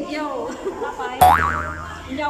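A comic cartoon "boing" sound effect comes in suddenly a little over a second in: a quick rising twang that then wobbles up and down, louder than the talking around it.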